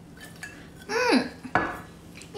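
A drinking cup set down on a hard surface, a single sharp knock about one and a half seconds in. A short falling vocal sound comes just before it and just after it.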